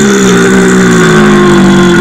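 A long, loud, drawn-out burp holding one nearly steady pitch.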